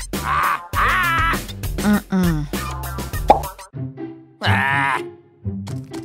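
Cartoon background music with a repeating bass line. A wavering, warbling sound comes in twice, near the start and again about four and a half seconds in, with quick clicks between.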